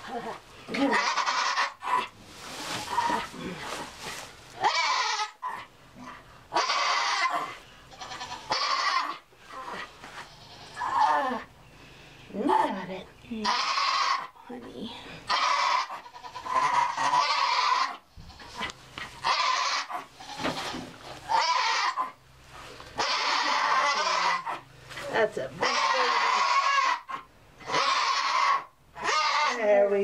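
Nigerian Dwarf doe crying out loudly again and again, about one cry every second or two, while straining in labour. She is pushing out a large kid whose head is stuck and is being helped out by hand.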